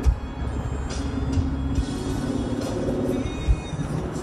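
Music over the low engine and road rumble inside the cabin of a moving Chevrolet Corvette C7 Stingray, with two sharp thumps, one just after the start and one near the end.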